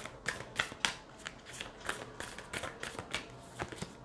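A deck of cards being shuffled by hand: a soft, irregular run of sharp card clicks, several a second.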